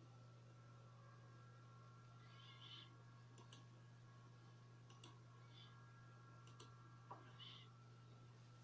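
Three faint computer mouse button clicks, each a quick pair, about a second and a half apart, over a steady low hum.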